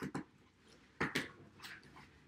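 A tightly sealed package being pulled and worked at by hand: a few short rustles and scrapes, the loudest about a second in.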